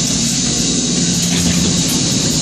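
Loud, steady haunted-house ride ambience: an even hiss over a low rumble, with a low hum coming in around the middle.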